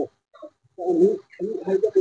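A bird calling twice in short low calls, once about a second in and once just before the end.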